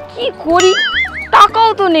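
Cartoon-style comedy sound effects laid over the scene: a warbling, wobbling tone, a sharp ding-like hit, then a tone sliding downward.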